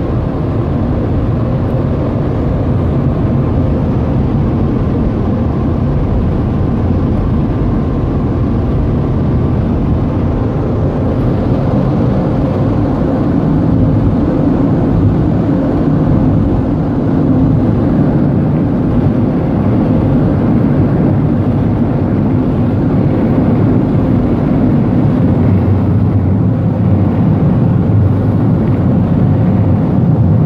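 Automatic car wash dryer blowers running, a loud steady rush of air heard from inside the car's cabin. It grows a little louder about halfway through.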